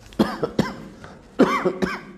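A man coughing close to a lapel microphone, in two short bouts about a second apart, each a few quick coughs.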